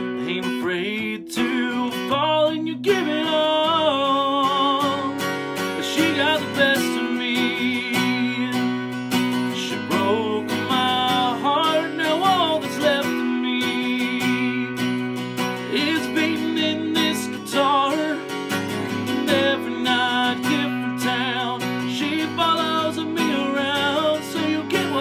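A man singing a country song while strumming an acoustic guitar, his held notes wavering.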